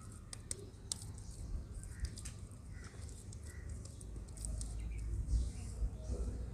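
Faint soft pats and squishes of hands shaping a ball of wet mud, with scattered light clicks. A low rumble comes in over the last second or so.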